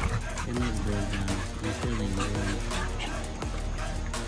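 Young bully-type dogs playing, with whimpers and panting, over background music.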